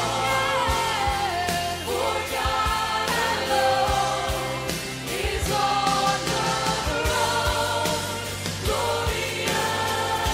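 Contemporary Christian worship song: a sung melody, gliding between notes, over a band with a sustained bass and a regular low beat.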